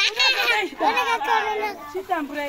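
Speech only: lively talk in high-pitched voices, children's voices among them.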